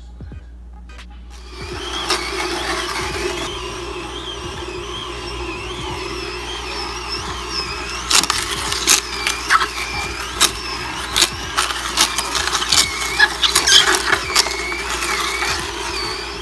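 Slow (masticating) juicer switches on about a second and a half in and runs with a steady motor hum. From about halfway on, celery stalks fed down the chute are crushed by the auger with a rapid series of sharp cracks and snaps.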